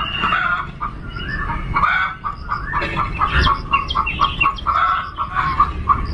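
Hens clucking: a string of short, quick calls, several a second, coming thickest in the second half.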